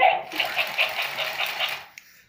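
Battery-powered ChiChi Love plush toy chihuahua's motor and gears whirring with a rhythmic clatter of about five beats a second as it moves in response to a voice command. The sound stops shortly before the end.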